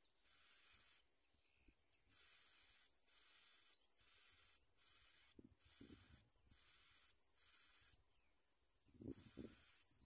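Bar-winged prinia nestlings begging: a string of hissing, wheezy calls, each under a second long, following one another closely with two short pauses.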